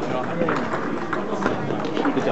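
Table tennis balls clicking sharply off paddles and tables at irregular moments, over a steady murmur of voices in a large hall.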